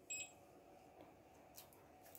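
A single short, high-pitched beep from a small piezo buzzer on an RFID project board, sounding as the EM-18 RFID reader reads an item's card to confirm the scan.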